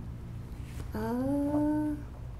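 A person's drawn-out hesitant "uhh", starting about a second in and held for about a second, rising slightly in pitch.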